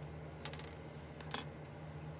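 Small plastic Lego pieces clicking as they are picked up and handled, two sharp clicks about a second apart over a low steady hum.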